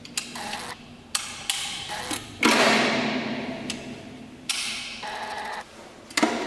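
A metal-clad wall light switch being clicked several times: a series of sharp, irregular clicks, some followed by a second or two of fading handling noise.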